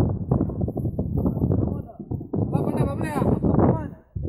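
People's voices talking and calling out, rising in pitch in the second half, over a steady low rumble.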